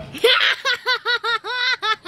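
High-pitched laughter: a quick run of about eight short 'ha' syllables, roughly five a second, each rising and falling in pitch, starting with a louder burst about a quarter second in.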